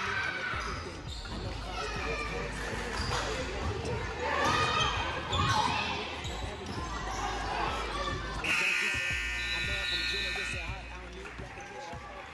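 Gym crowd shouting and cheering over a basketball bouncing on the hardwood, loudest about halfway through. About eight and a half seconds in, the scoreboard horn sounds steadily for about two seconds as the game clock runs out.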